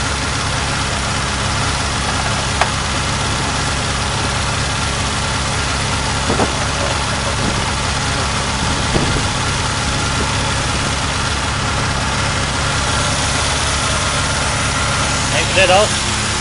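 Fiat petrol engine idling steadily and evenly, warm and with the choke closed, running as an engine should. A few faint short clicks sound over it as a screwdriver works the air-cleaner lid.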